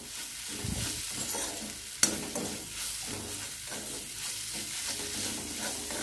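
Metal spatula stirring and scraping fried gongura leaves and onions around a metal wok, over a steady sizzle of hot oil. A sharp clink of the spatula against the pan about two seconds in.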